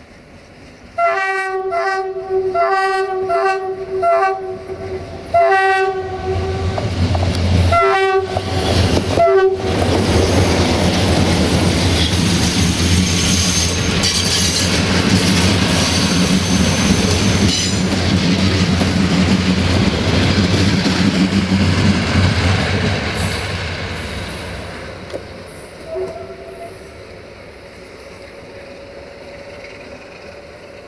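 Sulzer-engined CFR class 060-DA diesel-electric locomotive sounding its two-tone horn in a series of short blasts as it approaches. Its engine then passes close with a loud low drone, and the passenger coaches roll by with wheel noise that fades away as the train recedes.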